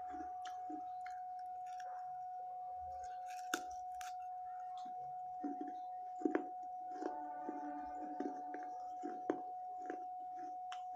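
Pieces of a thick baked-clay saucer being bitten and chewed: soft chewing with sharp crunches, the loudest a little over a third of the way in, about two-thirds in and near the end. A steady high hum runs underneath.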